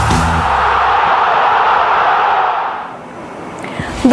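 Sports-segment intro jingle of a TV newscast: low bass notes stop just after the start, leaving a rushing noise swell that fades away about three seconds in.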